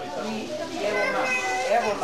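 Overlapping chatter of children and adults in a crowded room, with a child's high voice standing out about a second in.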